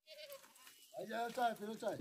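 Goats and sheep of a grazing herd bleating: a brief faint call at the start, then several overlapping bleats from about a second in.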